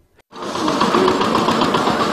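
Busy street-market background noise with a steady mechanical rattle running through it, coming in about a third of a second in after a brief silence.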